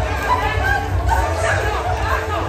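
Voices talking and chattering in a crowded hall, with a steady low hum underneath.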